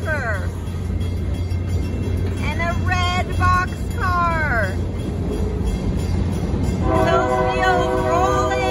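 Freight train cars rolling through a grade crossing, their wheels on the rails making a steady low rumble. About seven seconds in, a train horn sounds, a held chord of several notes.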